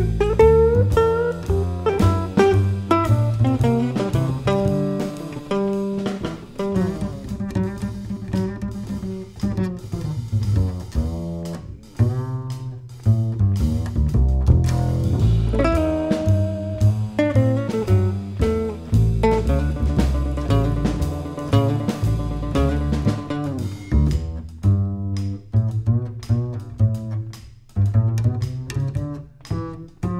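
Small-group jazz: a plucked upright bass carrying the lead line, with guitar playing behind it.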